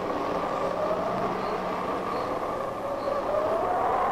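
Flying-saucer sound effect: a steady rushing drone with a faint tone that dips in pitch and then slowly rises.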